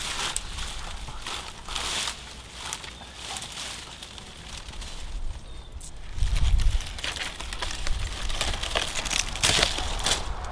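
Dry brush, twigs and leaves rustling and crackling in irregular bursts as someone pushes through brambles and undergrowth. A low rumble comes in about six seconds in.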